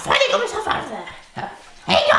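A voice giving about four short, loud calls in quick succession.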